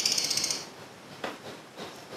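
A rapid, ratchet-like run of small mechanical clicks lasting about half a second at the start, followed by a couple of faint taps.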